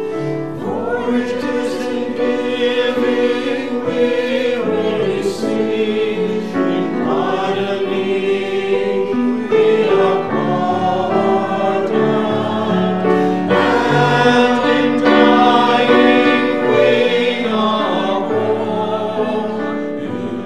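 A small mixed choir of men's and women's voices singing in harmony, accompanied by piano, in long held phrases with fresh entries every few seconds.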